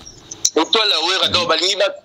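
Speech: a voice talking in French, starting about half a second in after a brief pause.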